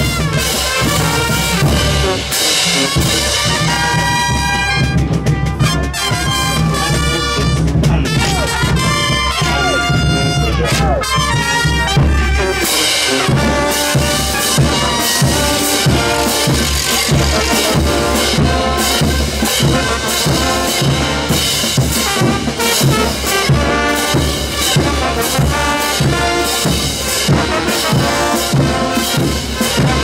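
Brass band playing morenada music, trumpets and trombones over a steady drum beat. About 12 seconds in, the long held brass chords give way to a busier passage with a strong regular beat.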